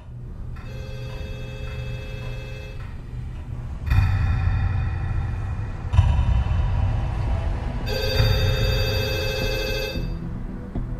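A telephone ringing in repeated bursts of about two seconds, with short gaps between rings, over a low droning background.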